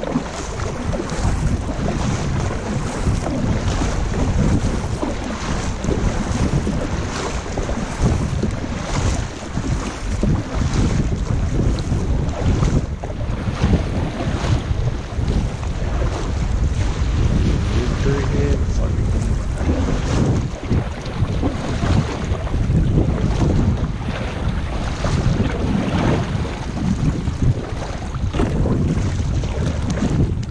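Wind buffeting the microphone, with water splashing from kayak paddle strokes recurring every second or two.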